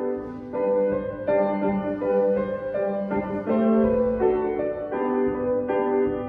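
Grand piano played in a slow piece, held chords and melody notes with a new note or chord struck about every half second to second.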